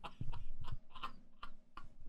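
A string of soft, unevenly spaced clicks, several in two seconds, after the intro music stops.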